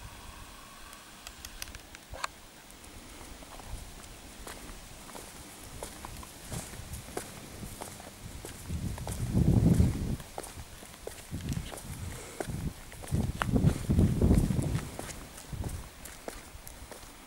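Footsteps on pavement with scattered light clicks, and two louder low rumbles, about nine and thirteen seconds in, which are the loudest sounds.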